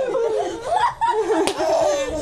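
People laughing and chuckling, with a few spoken sounds mixed in, and one sharp click about a second and a half in.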